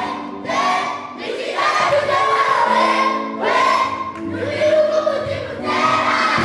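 A group of children singing a song together in chorus, in phrases of held notes.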